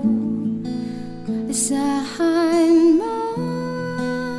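Acoustic guitar cover music, gently plucked and strummed, with a held note that wavers in pitch a little past two seconds in.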